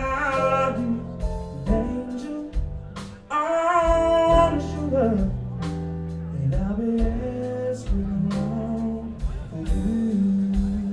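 Live band music: a man sings long, gliding notes over electric guitar, bass and drums.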